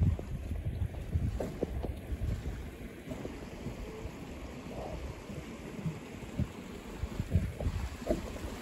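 Wind buffeting the microphone in uneven gusts, with a few short knocks scattered through.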